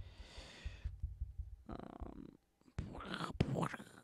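A man's quiet, whispered muttering and breathing close to the microphone, with a breathy exhale at the start and a few half-spoken words about three seconds in.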